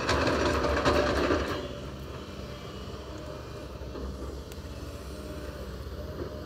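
Sumitomo hydraulic excavator's diesel engine running steadily while the machine works in mud, with a louder burst of metallic clanking and rattling in the first second and a half.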